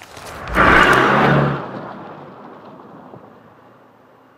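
A loud rushing whoosh with a low rumble: it swells up over half a second, holds for about a second, then fades away slowly.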